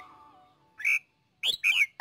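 The last notes of background music die away, then short bird chirps: one about a second in and a quick run of several gliding chirps near the end.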